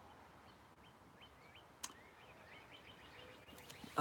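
Faint bird chirps: a loose series of short, rising notes, with a single sharp click a little under two seconds in.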